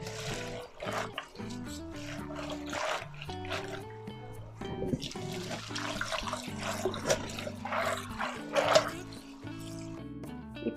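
Background music over water splashing as leafy greens are swished by hand in a steel pot of water, with the kitchen tap running into the pot for part of the time.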